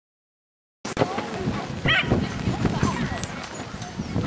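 Silence for almost a second, then outdoor sound at a dog agility ring: background voices mixed with a small dog's short calls, the highest and clearest about two seconds in.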